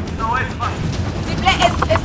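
Short shouted calls from people, over a steady low rumble of outdoor noise, with a few short knocks near the end.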